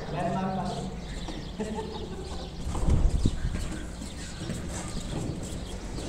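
Men's voices talking, with a low thud about three seconds in as a cardboard air-conditioner carton is shifted on the truck bed.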